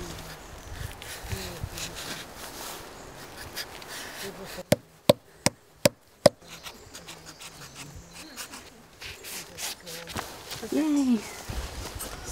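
Large knife chopping into red cedar bark at the base of the tree to cut the bark strip: five sharp strikes in quick succession a little before halfway, with quieter scraping and rustling of the blade and bark around them.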